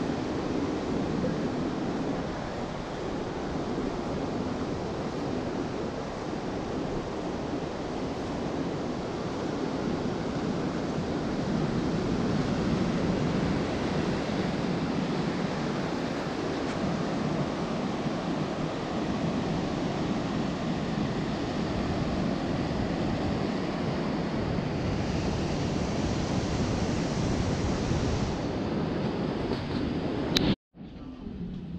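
Surf washing onto a sandy beach: a steady rushing noise of breaking waves, a little louder around the middle, with some wind buffeting the microphone.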